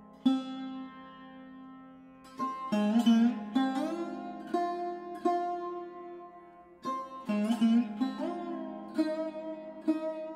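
Background music: a plucked string instrument over a steady drone, its notes struck irregularly, some sliding up in pitch after the pluck.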